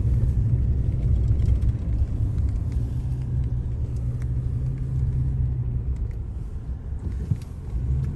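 Steady low rumble of a car's engine and tyres, heard from inside the cabin as it drives along. It quietens a little near the end.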